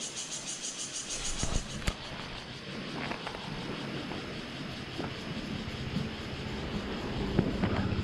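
Steady outdoor background noise with no clear single source, a faint high buzz in the first couple of seconds and a few sharp clicks about a second and a half in.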